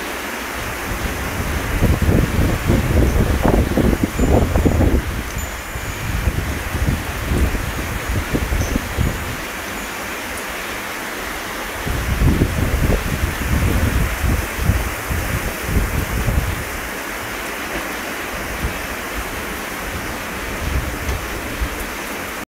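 Heavy monsoon rain falling steadily on dense vine foliage, a constant hiss. Gusts of wind buffet the microphone in two spells, about two seconds in and again about twelve seconds in.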